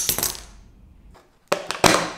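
Miniature spring-loaded wire mouse trap snapping shut with a sharp metallic clack at the start, its wire rattling briefly as it settles. About a second and a half in comes a cluster of four or five more sharp metallic clicks and clacks.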